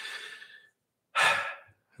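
A man breathing between sentences: a soft exhale that fades out, a short silent gap, then a quick intake of breath just past a second in.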